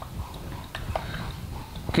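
Marker writing on a whiteboard: a few faint taps and short scratches over a low room rumble.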